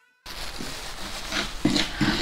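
Light rustling and scraping as a plastic-gloved hand reaches into a pan of dry, crisp gari, with a soft knock after about a second and a half, over a steady background hiss. A musical note cuts off at the very start.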